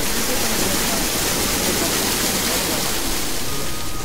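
A steady, loud hiss, strongest in the upper range, with faint voices beneath it.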